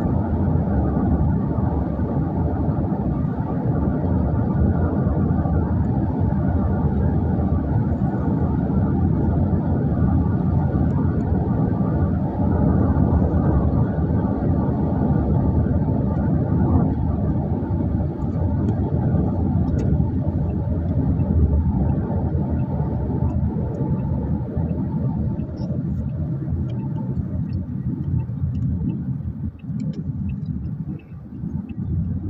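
Steady low rumble of road and engine noise heard from inside a moving vehicle.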